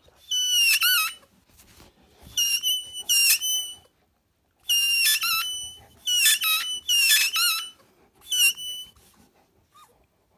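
Squeaky tennis ball squeaking as a Caucasian Shepherd puppy chews it. The squeaks are high-pitched and come in about six quick clusters.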